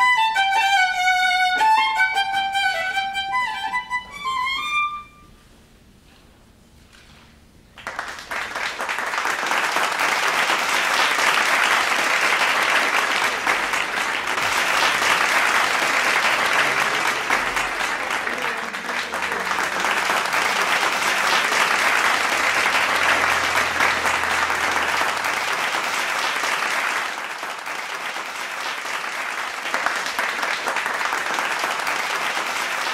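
A violin plays a quick run of notes that ends about five seconds in. After a short hush, audience applause breaks out about eight seconds in and keeps going, easing slightly near the end.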